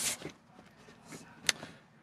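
Mostly quiet outdoor stretch with faint shuffling and one sharp click about one and a half seconds in.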